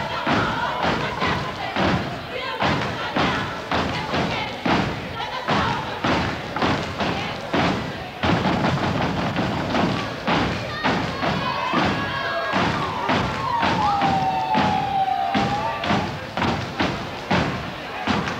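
Step team stomping and clapping in unison, a steady beat of about two hits a second. Voices sound over the beat, and a long sliding call dips and rises in the second half.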